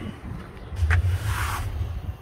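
Low wind rumble on a handheld phone's microphone, with a short click about a second in and a brief rustling hiss after it as the phone is moved.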